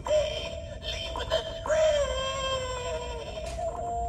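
Animated half-skeleton Halloween prop playing its sound clip through its small speaker: an electronically processed, sung voice, with a long drawn-out note that slides down in pitch from about two seconds in.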